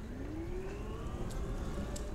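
Pride Go-Go Folding S19 mobility scooter's electric drive motor whining as it speeds up, its pitch rising steadily over about the first second and then holding, over a low rumble.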